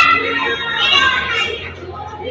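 Indistinct chatter of several voices, children's voices among them, with no clear words.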